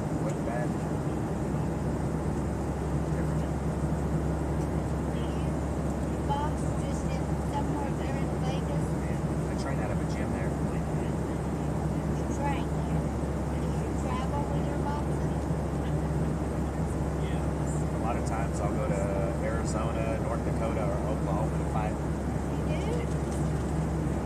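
Steady low drone of an airliner cabin in flight, with faint, indistinct voices of people talking nearby.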